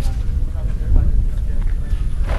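A steady low rumble on the microphone, with faint voices of people talking in the background.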